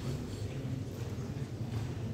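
A series of light, rhythmic knocks and rubs from a blackboard being wiped down, over a steady low hum.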